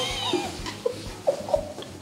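A few short, squeaky vocal sounds from a person, like stifled giggles held back behind a hand.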